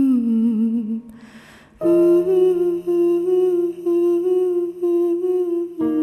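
A voice humming a slow, wordless melody in long, wavering held notes, with a breath drawn between phrases about a second and a half in.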